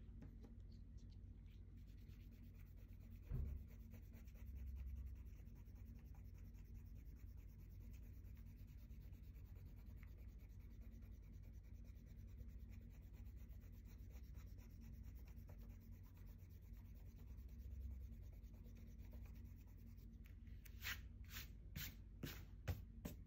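Faint rubbing of a white plastic eraser (Staedtler Mars) over copy paper, erasing the pencil guide lines from under dried ink. There is a single thump about three seconds in and a few sharper, louder strokes near the end.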